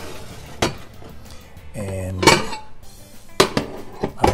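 A baking dish being handled and set down on a glass-top stove: a few sharp knocks and clinks, the loudest about halfway through.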